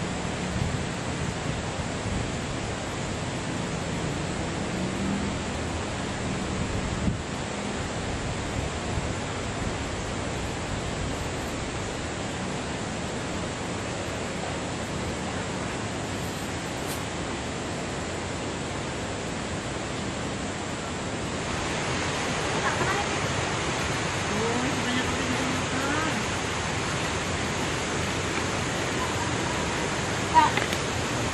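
Steady rush of a forest stream's flowing water, an even, constant noise that grows a little brighter about two-thirds through.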